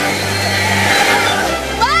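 Background music with sustained notes over a rushing hiss of splashing water as a Splash Mountain log-flume boat plunges down the drop. Near the end a person exclaims "Wow!".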